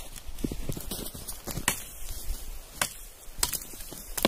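A few sharp cracks and knocks at irregular intervals, from wood being snapped off or cut by hand.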